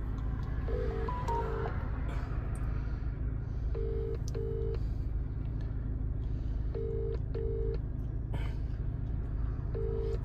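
Phone ringback tone on speakerphone, the British double ring: a pair of short rings every three seconds, heard three times with a fourth beginning at the end, while the call goes unanswered. A steady low rumble of the car cabin runs beneath.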